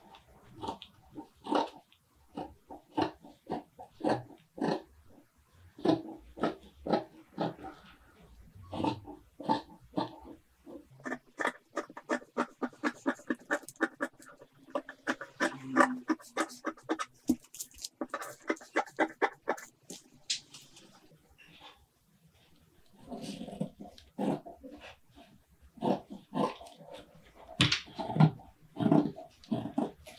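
Large fabric scissors cutting through a paper pattern laid on doubled fabric: snip after snip, with a faster run of short snips about halfway through and a brief pause a little later.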